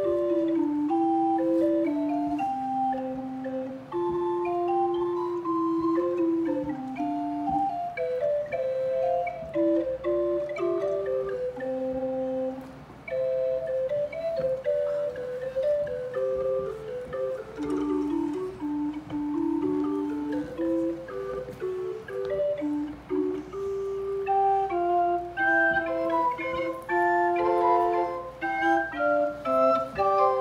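A small wooden pipe organ (an Orgelkids kit organ), its wind supplied by hand-pumped bellows, playing a simple tune on the keyboard in soft, flute-like held notes. The notes come shorter and quicker near the end.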